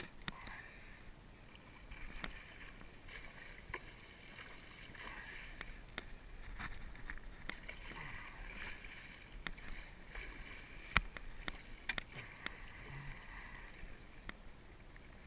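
Water splashing and churning as a hooked muskie thrashes at the surface beside the boat, swelling and easing in bouts. Scattered sharp clicks and knocks of gear against the boat sound through it, one of them loudest about eleven seconds in.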